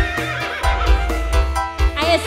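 Live band playing an instrumental passage between sung lines: a high melody with sliding notes over a steady beat of drums and bass.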